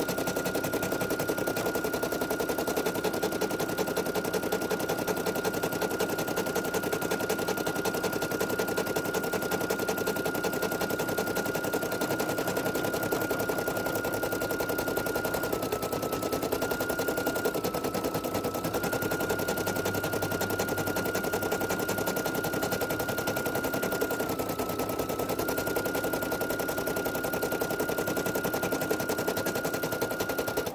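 Embroidery machine stitching out satin-stitch lettering: a rapid, even needle clatter with a steady high whine that dips briefly in pitch three times.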